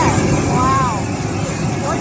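Handheld gas blowtorch flaming cubes of steak on a grill, a steady rushing noise, with a voice briefly heard over it about half a second in.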